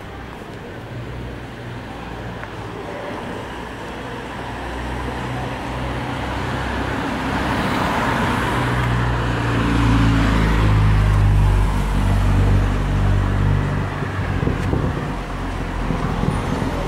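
Street traffic at night: motor vehicle engine and tyre noise, growing louder to a peak about ten seconds in as a vehicle passes close, then easing a little near the end.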